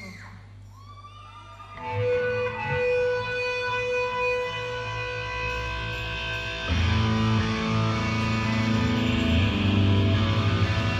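Live rock band starting a song: over a low stage hum, an electric guitar comes in about two seconds in with long ringing notes. Near seven seconds a heavy bass joins and the sound fills out and gets louder.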